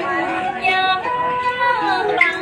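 A woman singing a Huế folk song (ca Huế) unaccompanied, drawing out long held notes.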